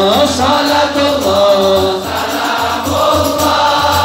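Men's voices singing a sholawat, an Arabic devotional song in praise of the Prophet Muhammad, in long held, melismatic notes over a steady low beat.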